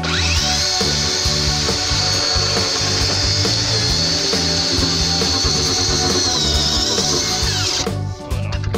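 DeWalt cordless circular saw cutting through an expanded-polystyrene insulated concrete form block: the motor spins up to a steady high whine, sags slightly under load near the end of the cut, then winds down.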